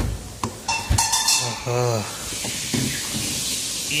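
Refrigerator freezer door and drawers being opened and shut: a thump right at the start and a couple of sharp clicks in the first second, then a steady hiss in the second half.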